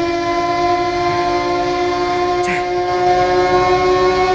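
Background score: a single sustained note held at one steady pitch, a drone with a reedy, horn-like tone. A short voice sound breaks in about two and a half seconds in.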